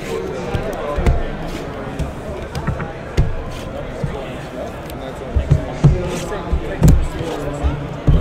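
Shrink-wrapped trading card boxes being set down and stacked on a table: a handful of dull thuds, over background chatter of voices.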